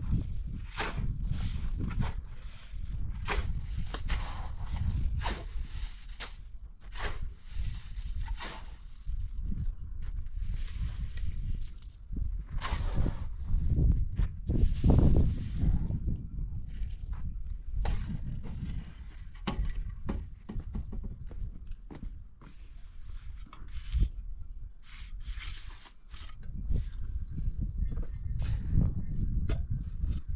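Masonry work: a shovel scraping and turning wet mortar, with many short scrapes and knocks over a steady low rumble.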